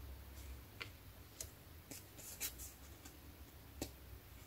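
A few faint, soft taps of a paper card being handled and set down on a cutting mat.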